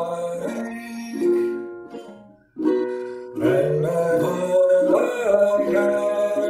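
Ukulele being played, its chords ringing. The sound fades almost to nothing about two and a half seconds in, then the playing starts again.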